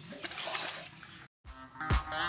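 Water splashing and sloshing in a plastic kiddie pool, cut off by a moment of dead silence; funk music with a strong beat starts near the end.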